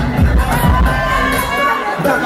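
Audience cheering and shouting over loud dance music with a steady bass beat; the beat drops out near the end.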